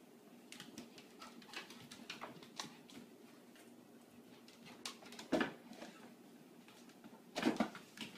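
A grey cat and a white puppy scuffling on a vinyl floor: light scratches and taps throughout, with two louder short sounds about five and a half and seven and a half seconds in. A steady low hum runs underneath.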